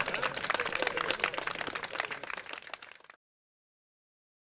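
Audience applause of many irregular claps, fading and then cut off abruptly about three seconds in, followed by silence.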